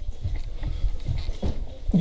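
Irregular dull thumps and knocks, several in two seconds, with faint voices in between.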